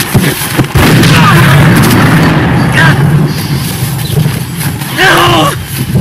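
Film soundtrack: loud, dense rumbling noise with a steady low drone for several seconds, then a man's voice about five seconds in.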